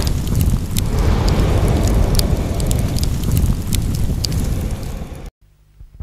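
Fireball sound effect: a loud, continuous low rumbling roar with scattered sharp crackles, cutting off abruptly a little past five seconds in.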